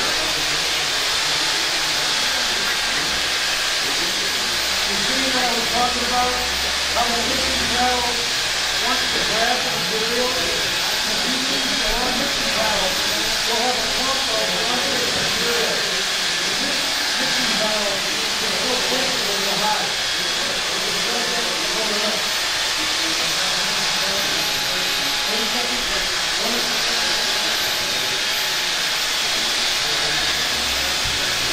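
Corded electric drill turning a mixing paddle in a bucket of two-component coating, running steadily without a break.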